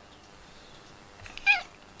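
A cat gives one short meow about one and a half seconds in.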